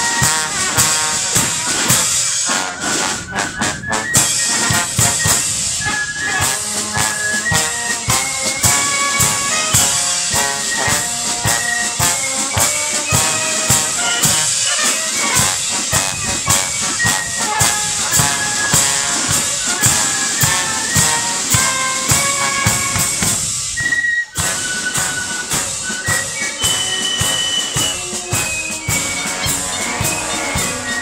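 Marching brass band playing as it marches, trombones, tuba and clarinets carrying the melody over a steady beat of marching drums. The sound drops out for a moment about 24 seconds in.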